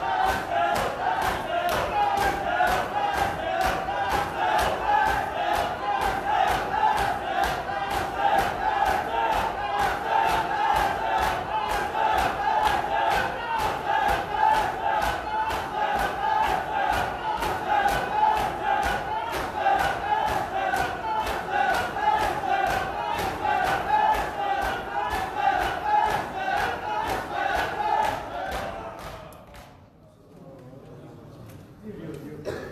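A crowd of men chanting together while beating their chests with open hands in matam, the strikes keeping a steady, fast rhythm under the massed voices. Chanting and strikes fade out together near the end.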